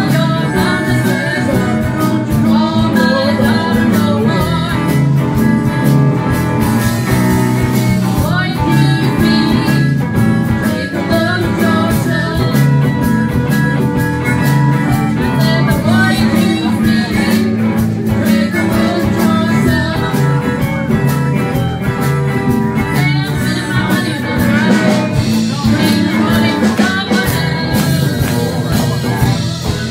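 Live blues band playing: electric guitars, bass and drums together.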